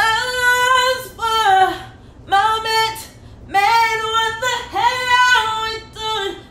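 A woman singing wordless vocalizations unaccompanied, freestyling a melody in place of lyrics. She holds notes in short phrases, several of them sliding down at the end.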